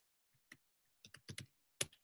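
Faint keystrokes on a computer keyboard as a word is typed: a single tap about half a second in, then a quick, uneven run of taps.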